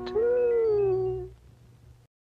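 R2-D2 droid sound effect: one electronic whistle that rises slightly and then slides down, lasting about a second before fading out.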